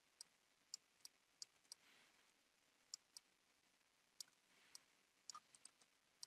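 Faint, sharp clicks of a computer mouse, about a dozen scattered irregularly, with a quick run of four or five near the end, over near silence.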